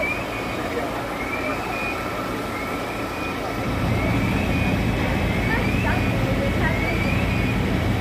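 Idling fire engines' diesel engines and street traffic noise, with a steady low engine hum that grows louder about four seconds in. A short rising chirp repeats about every second and a half.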